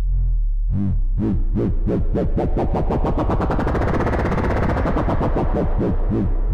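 Aalto CM software synthesizer playing a low sine-based tone modulated by its LFO across pitch, timbre, reverb and pan, a crazy ping-pong stereo effect. The pulsing starts slow about a second in, speeds up into a fast flutter as the modulation wheel raises the LFO's rate and depth, then slows again near the end.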